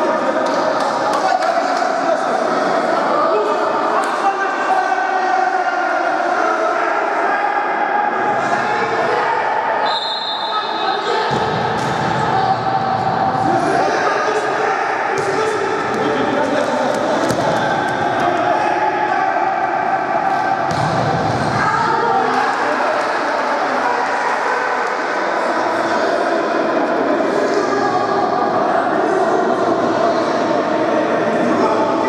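Futsal ball being kicked and bouncing on a sports-hall floor, with players' voices echoing in the large hall.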